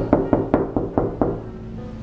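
Knuckles knocking on a closed interior door: about seven quick knocks, about five a second, stopping a little over a second in.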